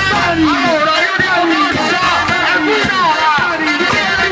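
Live band music: a melodic line of voice and saxophones over a steady drum beat of about two strokes a second, with electric guitar and keyboard in the band.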